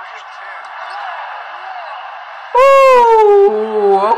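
A basketball game broadcast playing through a phone speaker, thin and tinny: arena crowd noise and faint commentary. About two and a half seconds in, a loud, long, falling "ooh" from a young man reacting to a shot cuts in over it.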